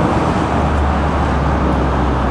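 Road traffic: cars passing on the street, with a steady low engine rumble that comes in about half a second in.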